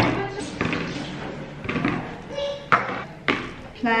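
Several sharp knocks and clunks of a metal baking tray and plates being handled on a countertop, with a little speech between them.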